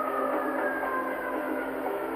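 Steady arena crowd noise in a basketball arena, heard on an old TV broadcast, with a faint thin tone under it.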